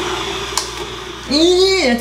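Personal bullet-style blender motor running on a thick smoothie low on liquid, its steady whir fading away over the first second, with a sharp click about half a second in; a voice comes in from a little past the middle.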